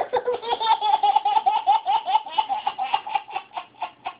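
Baby laughing hard: a long run of rapid, high-pitched laugh pulses, several a second, that starts suddenly and grows sparser toward the end.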